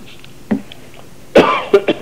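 A person coughing: a short throat-clear about half a second in, then a loud cough followed by two quick, smaller coughs near the end.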